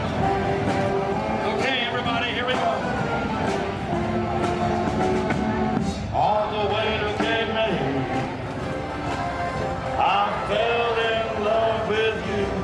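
Mummers string band playing live, with saxophones, banjos and accordions together in a steady ensemble tune.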